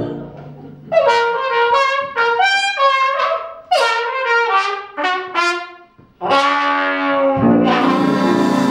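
Jazz trumpet playing an unaccompanied break: several quick phrases with short gaps, ending on a held note, after the band cuts off at the start. The full band comes back in near the end.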